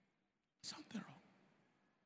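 A brief spoken utterance of about two syllables, about half a second in, trailing off in the hall's reverberation; near silence around it.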